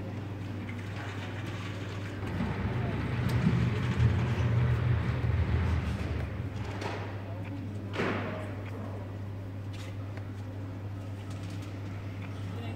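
A steady low machine hum, with a louder rumble swelling about two seconds in and fading by about six and a half seconds, and a short sharp sound about eight seconds in.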